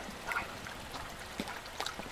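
Steady rush of a small woodland stream running with snowmelt, with a few brief faint clicks and one short faint sound about a third of a second in.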